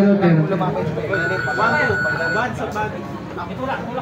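Overlapping voices of a crowd talking, with one steady, high electronic beep lasting about a second and a half, starting about a second in.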